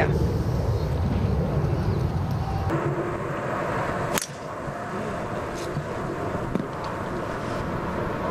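Outdoor golf-course ambience with heavy wind rumble on the microphone. A sharp click about four seconds in marks an edit, after which the ambience is quieter, with a faint steady tone.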